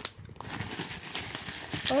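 A hand rummaging through crinkle-cut paper shred packing filler in a cardboard box, giving an irregular papery rustle and crackle.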